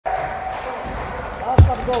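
A basketball bouncing once on a hardwood court, a hard thud about one and a half seconds in, over an intro jingle that opens with a steady tone. A short vocal 'oh' comes near the end.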